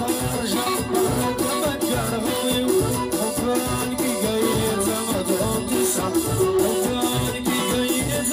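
A live band playing amplified party music through a PA speaker: drum kit, electric guitar and keyboard, with a steady fast beat.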